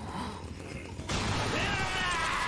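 Anime soundtrack chainsaw sound effect: a low rumble, then about a second in a loud chainsaw engine rev cuts in suddenly as the starter cord is pulled.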